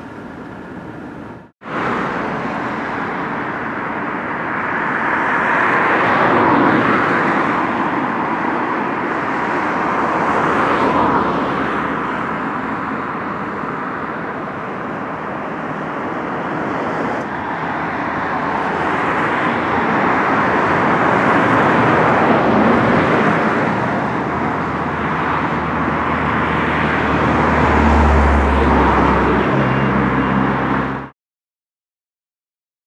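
Road traffic passing, an even hiss of tyres and engines that swells and fades every few seconds as vehicles go by, with a low rumble near the end. The sound drops out briefly just under two seconds in.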